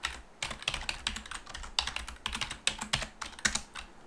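Computer keyboard typing: a quick, uneven run of keystrokes as a terminal command is typed and entered.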